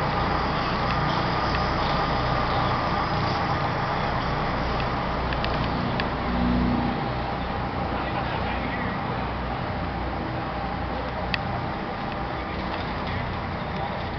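Steady low rumble of a car barge's engines under way, with an even rush of wind and water.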